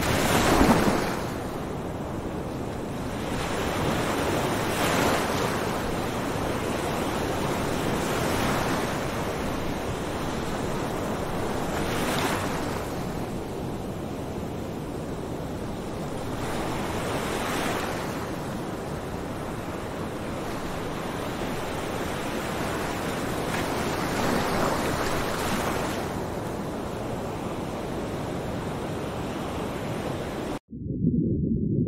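Surf breaking on a beach: an even wash of waves that swells and fades every few seconds, loudest right at the start.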